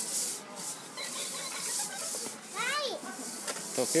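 Plastic hula hoop swishing and rubbing as it spins around a small child's waist, a steady hissing rustle. A brief high child's voice rises and falls about three quarters of the way in.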